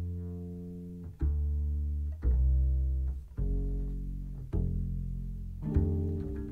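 Music: a plucked double bass playing slow, low single notes about one a second, each ringing on as it fades, with a quick run of notes near the end. No singing.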